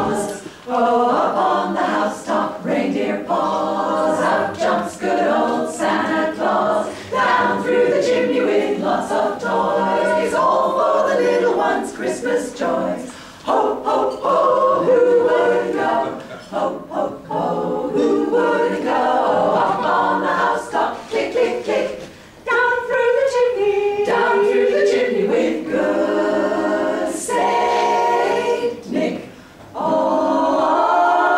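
A small group of women singing a cappella, unaccompanied by any instrument, with short breaks between phrases.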